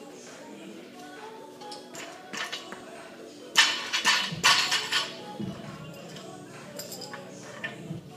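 Weight plates and a barbell clinking and clattering as plates are changed by hand on the bar, with a loud run of metal knocks about halfway through, over background music.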